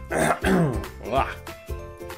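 A man clearing his throat twice, loudly over background music with a steady beat.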